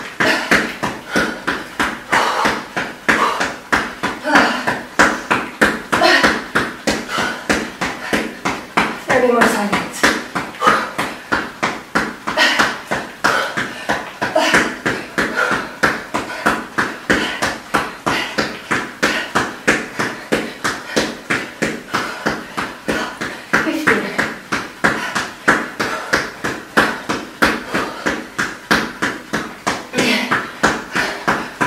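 Rapid, even footfalls of trainers striking an exercise mat on a hard floor during high knees, several thumps a second, with hard, voiced breathing over them.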